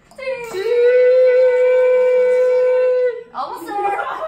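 A person singing one long, steady note, the held note of a sung scale exercise. The voice slides up into it in the first half second, holds it for about two and a half seconds, then breaks off into voices and laughter near the end.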